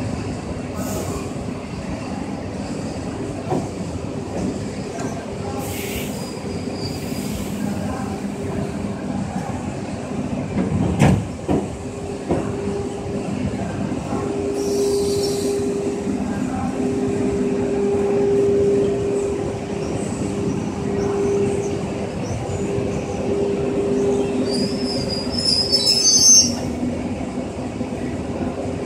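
ED4M-series electric multiple unit moving slowly past on the rails, with a steady running hum that grows stronger partway through. There is a single loud knock about eleven seconds in and a brief high wheel squeal near the end.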